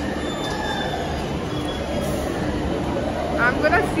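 Steady, dense din of an indoor amusement arcade: machine and ride noise with faint steady tones, and a voice coming in near the end.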